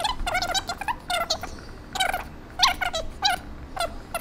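Dry-erase marker squeaking on a whiteboard as numbers and words are written: a quick run of short, high squeaks, one with each stroke, some sliding in pitch.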